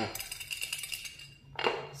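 Xóc đĩa counters rattling and clinking inside a ceramic bowl held upturned over a plate as it is shaken by hand. The bowl and plate are set down with a sharp knock near the end.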